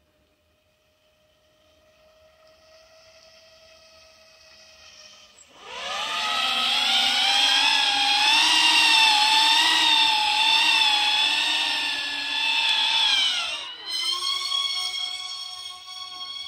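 Electric motors and propellers of a DIY VTOL RC plane whining: faint at first, then loud from about five and a half seconds in as the plane flies close, the pitch wavering with the throttle. Near the end the pitch drops and the whine picks up again as the plane pulls up into a vertical hover.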